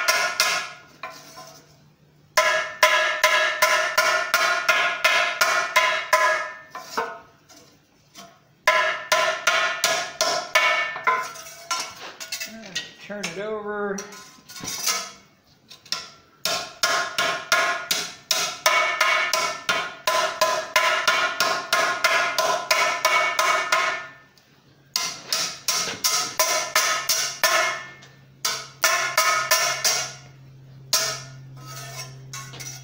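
Hand hammer striking a thin forge-welded sheet-steel hoop on a steel cone mandrel to true it up: quick runs of blows, about four or five a second, each with a bright metallic ring. The runs stop for a second or two several times and start again.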